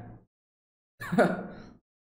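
A man's short, breathy laugh, once, about a second in.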